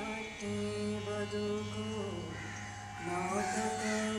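Live Indian devotional song: a solo voice holds long notes that slide gently between pitches, over a steady drone. The voice pauses briefly after about two seconds, then comes back in.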